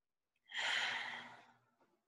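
A woman's single deep, audible sighing exhale during a guided breathing exercise, strongest at the start and fading out over about a second.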